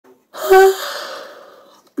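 A woman's sudden breathy gasp with a brief voiced start, trailing off into a long, fading exhale.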